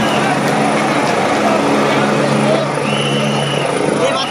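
A helicopter hovering close by, a steady drone, with people shouting over it.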